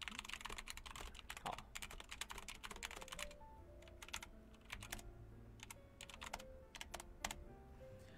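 Typing on a computer keyboard: quick, irregular key clicks throughout, with quiet background music underneath from about three seconds in.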